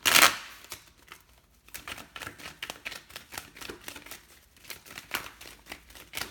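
Tarot deck being shuffled by hand: a loud swish right at the start, then a steady run of quick card flicks and snaps.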